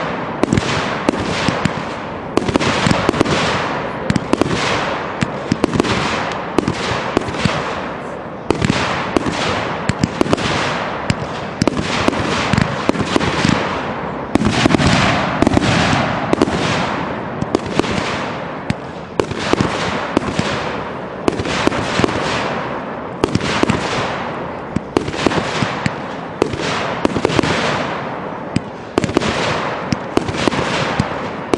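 Consumer aerial firework cakes firing continuously: a rapid run of launch thumps and bursting bangs, more than one a second, each bang trailing off before the next.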